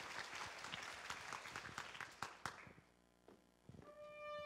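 Faint audience applause, thinning out and dying away about two and a half seconds in, then a brief near silence; a trumpet's first sustained note begins right at the very end.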